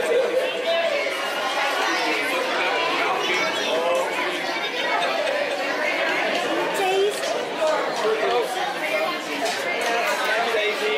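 Indistinct chatter of many voices filling a busy restaurant dining room, steady throughout with no words standing out.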